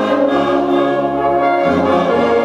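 Brass band of trumpets, euphoniums and tubas playing together in held chords, the tubas moving to a new bass note twice.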